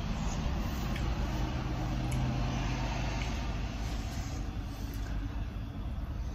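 A low motor hum that swells over the first two seconds or so and then eases off.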